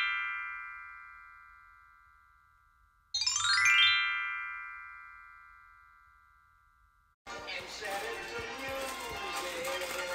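Electronic chime sound effect: a quick rising run of bell-like notes that ring on and fade away. The tail of one run fades out at the start, and a second run comes about three seconds in and fades over two or three seconds. From about seven seconds in there is a muffled mix of room noise and voices.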